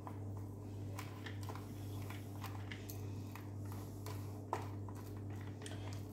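Metal spoon pressing and scraping a crumbly kunafa-and-nut filling into a silicone mold cavity: faint scattered clicks and scrapes.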